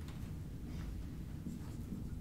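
Dry-erase marker writing on a whiteboard: a few short strokes in quick succession, over a low steady room hum.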